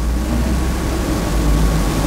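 A loud, low, steady rumble with no speech over it.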